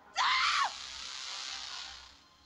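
A short, high-pitched human scream, about half a second long, that rises and falls in pitch. It is followed by a hissing noise that fades out near the end.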